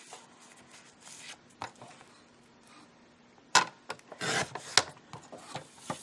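Paper rubbing as it is slid into place on a Fiskars sliding paper trimmer. About three and a half seconds in comes a sharp click, then a short rasping swish as the trimmer's blade cuts across the paper strip, followed by a few lighter clicks and taps of paper handling.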